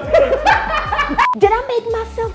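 A woman laughing loudly, over background music with a deep bass beat.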